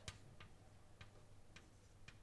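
Chalk writing on a blackboard: a few faint, sharp ticks as the chalk strikes the board, over near-silent room tone.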